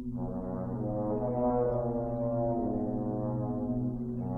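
French horn playing slow, held notes in a low register over a marimba, the notes changing every second or so.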